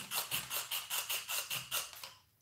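Fine-toothed Tamiya hobby razor saw cutting through a resin casting block, in quick even back-and-forth strokes of about four a second. The run stops right at the end.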